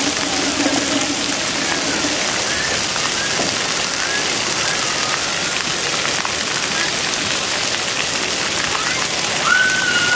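Splash-pad water jets spraying and pattering onto the wet deck: a steady hiss of falling water. Children's voices carry faintly over it, and near the end one child gives a short high call.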